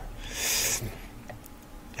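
A person's short breath: a soft hiss of air lasting about half a second, then faint room tone.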